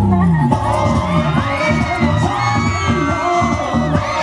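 Audience cheering and shouting, many high voices rising and falling, over dance music with a steady beat.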